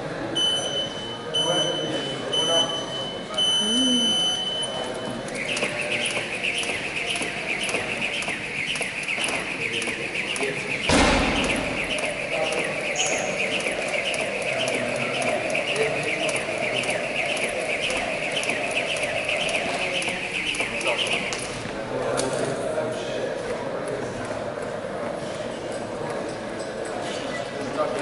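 Gym interval timer beeping a start countdown: three short beeps and a long one. Then a jump rope whirring and slapping the floor in a fast, steady rhythm for about sixteen seconds, with a single loud thump about eleven seconds in.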